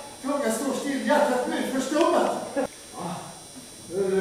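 Speech: an actor speaking lines of a play in several phrases with short pauses between them.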